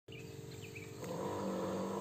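Battery-powered 12 V sprayer pump running with a faint steady hum, going a little louder and lower about a second in, with a few faint bird chirps.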